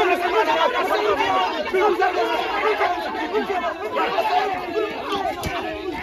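A group of people talking and calling out over one another: a continuous babble of overlapping voices with no single clear speaker.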